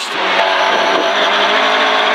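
Rally car's engine held at steady high revs under full throttle, heard from inside the cabin, with the rush of tyres and gravel from the loose forest surface.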